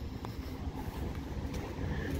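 Steady low outdoor rumble, with a couple of faint ticks.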